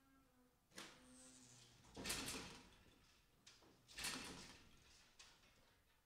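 Four metal clanks and bangs from the sale ring's steel gates and pen panels as calves are let in and move along them, the loudest about two and four seconds in, each ringing briefly in the ring.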